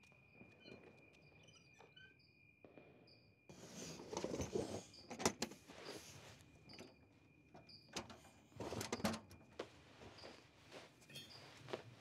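Night insects: a steady high cricket trill with short repeated chirps. About three and a half seconds in, louder handling begins: knocks and clicks of a wooden trunk lid being handled and opened, and rustling as clothes inside are rummaged through.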